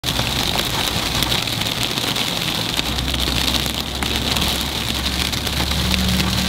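Hail and rain striking a car's windshield and roof, heard from inside the cabin as a dense run of small ticks over the low steady hum of the idling car.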